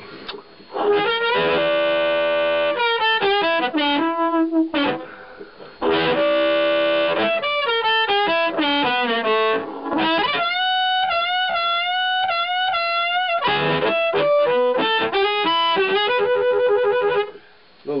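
Blues harmonica played through a chopped Astatic 200 bullet mic with a 1970s Shure controlled-magnetic element into a Sonny Jr. Cruncher amp, giving a distorted, horn-like "smoking" tone. Chords alternate with single-note lines, some notes held with a wavering pitch, with a short break about five seconds in.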